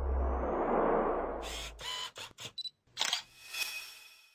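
Logo-sting sound effect built on an SLR camera shutter: a low rumbling whoosh, then a quick run of shutter-like clicks. Two louder clicks near the end leave a bright ringing shimmer.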